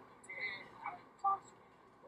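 A few short, faint, muffled voice sounds from dashcam audio of drunk passengers in the back of a car, heard as the footage plays back on a screen.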